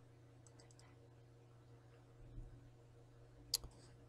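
Faint computer mouse clicks: a few soft clicks about half a second in and one sharper click near the end, over a low steady hum.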